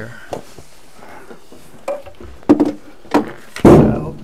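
Knocks and clatter of wooden cabin joinery being handled, ending in a loud thump near the end as a wooden panel is opened to get at the leaking bolt beneath.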